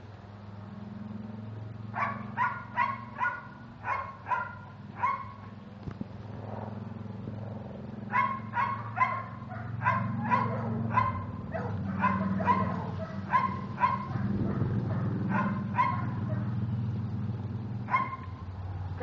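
A dog barking in quick series, about two barks a second: a run of about seven barks, a short pause, then a longer run of barks, over a steady low hum.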